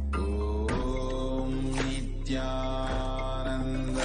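Devotional music: a mantra chanted in held, sung notes over a steady low drone.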